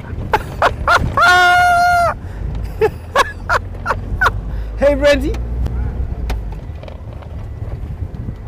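Open safari Land Rover's engine rumbling low as it drives, with one flat, steady horn blast about a second long near the start, a greeting to a passing game-drive vehicle. A few knocks from the vehicle, and a short shout about five seconds in.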